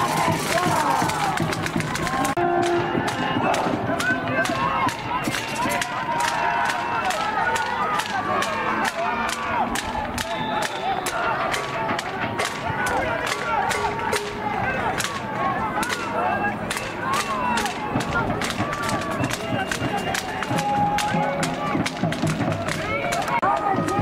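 Crowd noise at a football game: many voices shouting and cheering over one another, with a steady run of sharp claps.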